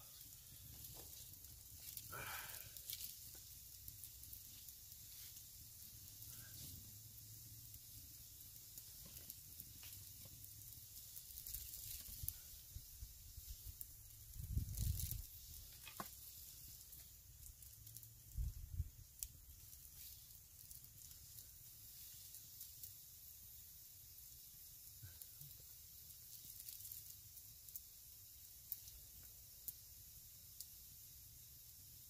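Faint handling sounds of wooden chair poles and paracord among dry leaves: small clicks and rustles over a steady hiss, with a few louder low thumps about halfway through as the pole frame is lifted and moved.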